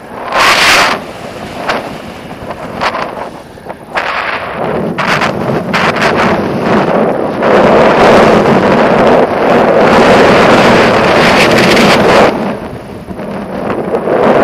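Airflow rushing and buffeting over a selfie-stick camera's microphone in flight under a paraglider, at first in separate gusts, then a steady loud rush through most of the second half, easing near the end.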